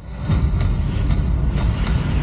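Deep, rumbling sound effect of a video logo sting. It comes in suddenly and holds steady, with faint regular ticks over it.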